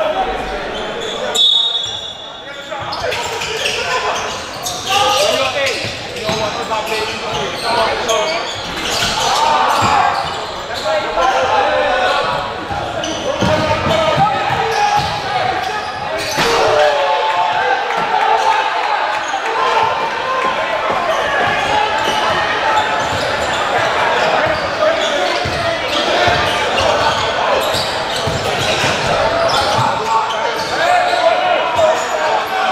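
A basketball bouncing on a hardwood gym floor during play, under a continuous din of spectators' and players' voices in a gymnasium.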